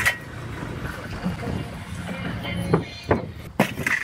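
Steel brick clamps clinking and knocking against bricks as rows of bricks are gripped and lifted off a pack, with sharp clinks near the start and near the end.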